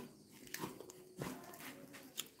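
Faint chewing and crunching of dried smoked fish, with a few soft crackles.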